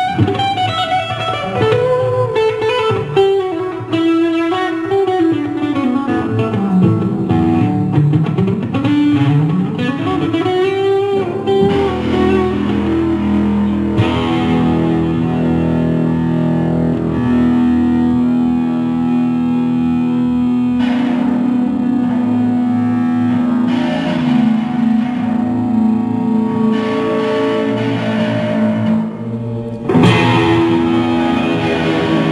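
Instrumental jam music led by an electric guitar played through effects. For the first twelve seconds or so the notes slide and swoop in pitch; after that the music settles into long sustained notes over a steady low drone.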